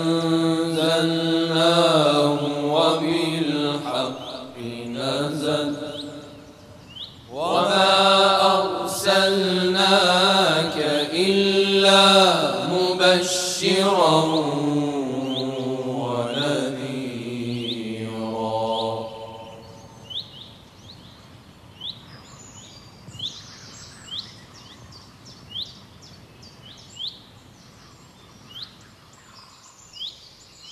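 A man reciting a Quran verse in melodic tajwid chant, with long held notes, which ends about two-thirds of the way in. After it, short bird chirps repeat about once a second.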